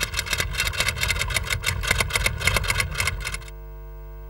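A sound effect under a title card: rapid, even clattering pulses, about ten a second, over a steady hum. The pulses stop about three and a half seconds in, leaving only a low hum.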